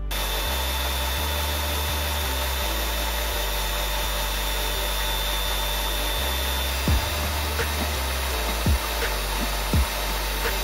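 Small pen-style rotary tool running with a steady hiss and faint high whine, its bit held against a tiny balsa wood lure body. A few short thumps come in the second half.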